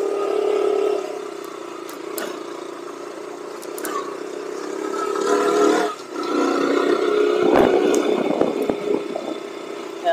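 KTM Duke motorcycle engine running while riding at low speed. Its note builds toward the middle, dips sharply for a moment about six seconds in, then picks up again.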